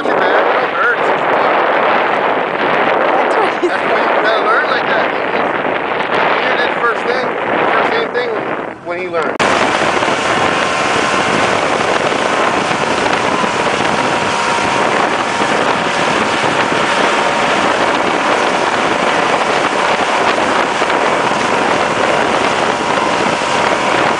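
Outboard motorboat under way, with wind on the microphone and water rushing past over the engine's drone. About nine seconds in the sound changes abruptly to a steadier, brighter rush of outboard engine, wake and wind as the boat runs at speed towing a water-skier.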